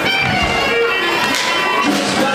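Live swing band playing an uptempo number: clarinet over acoustic guitar, upright bass and drums.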